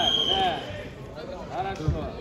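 Voices carrying across a large sports hall during a combat bout, with a short, steady high-pitched tone about half a second long at the very start.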